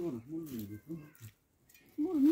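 A person speaking in a fairly low voice for about a second, then a short pause near the end.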